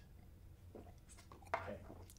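A woman gulping down a drink from a stemmed glass: a few faint swallows about a second in.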